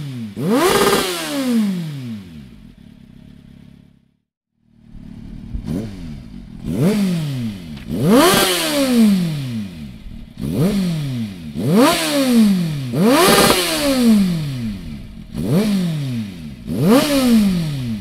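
Kawasaki Z750 S inline-four engine revved in quick throttle blips through Dominator slip-on silencers, each blip rising sharply and dropping back to idle. There is one blip on the OV silencer, rated 100 dB, then a brief cut. After that comes a run of about eight blips on the HP1 silencer, rated 101 dB.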